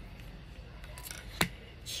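An oracle card being handled and laid down on a table among other cards, with one sharp click about one and a half seconds in.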